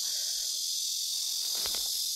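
Steady, high-pitched chorus of insects chirring.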